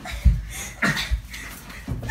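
Thumps and scuffling of two people wrestling, the loudest bump about a quarter second in, with a short rising voice sound just before one second.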